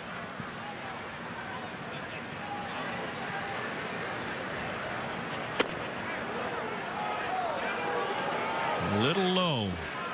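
Ballpark crowd ambience from a thin, rain-soaked crowd, with a single sharp pop about halfway through as a fastball smacks into the catcher's mitt for a called ball. Near the end a voice calls out loudly, its pitch rising and then falling.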